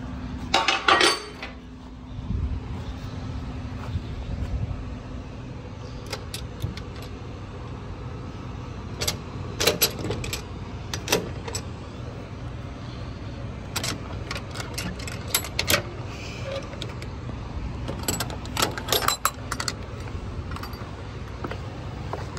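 Keys jangling in short, irregular bursts as someone walks along a semi-trailer, over a steady low engine hum from an idling truck.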